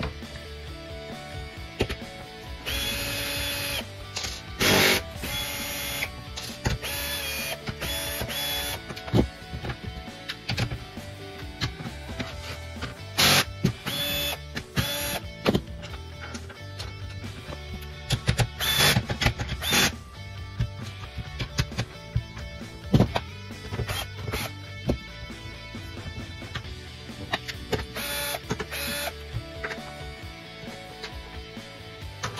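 Repeated short whirring bursts from a cordless drill-driver spinning snowskate truck mounting bolts, each burst lasting a second or two, heard over background music.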